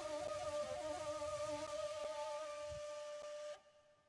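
Wooden end-blown folk flute playing a slow melody over a steady held drone note. The music cuts off abruptly about three and a half seconds in.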